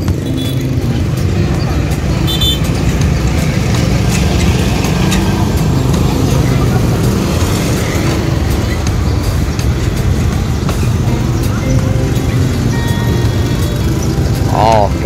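Many motorbike engines idling and pulling away in a crowded street, a steady low rumble, mixed with the chatter of a crowd.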